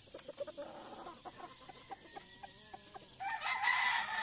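Chickens clucking softly in short repeated notes, then, about three seconds in, a rooster starts a loud, long crow.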